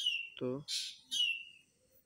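A bird calling twice in the background. Each call is a short harsh burst followed by a falling whistle, about a second apart.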